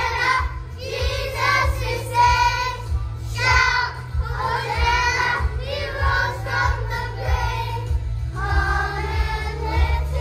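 A group of young children singing a worship song together in unison, over recorded backing music with a steady beat and bass.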